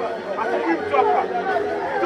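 Crowd chatter: many voices talking over one another at close range in a jostling group.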